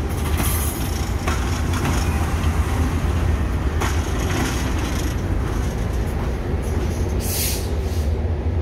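A Metrolink train led by an F125 diesel locomotive rolls slowly past with a steady low diesel drone. Wheels click over the rail joints a few times, and a short high-pitched squeal comes near the end.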